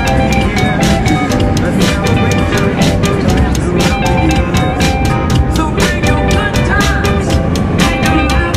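Music with a steady drum beat, over the low rumble of a car driving.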